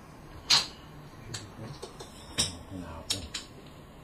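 Mahjong tiles clacking as players handle and set them down on the table: five or six sharp clicks at uneven spacing, the loudest about half a second in.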